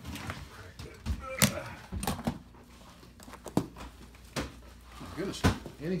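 Latches of a hard-shell briefcase snapping open and the case being handled, a series of sharp clicks and knocks.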